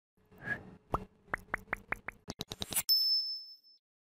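Logo intro sound effect: a short swell, then a run of plopping pops that speed up, ending about three seconds in with a bright high ding that rings out and fades.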